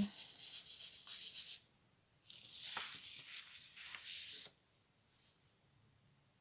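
Paper rustling and rubbing in two scratchy stretches of a second or two each, then near quiet: hands working over oil-pastel drawings on paper sheets.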